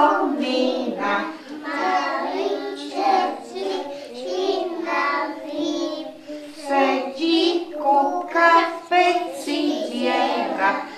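A group of young children singing a song together, phrase after phrase with short breaks between them.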